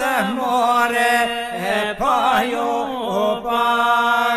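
Men singing an Albanian folk song from Kërçova in two-part polyphony with iso: a lead voice sings a wavering, ornamented melody over a steady drone held by the other singers. The lead breaks off briefly about two seconds in and slides up into a new phrase while the drone holds.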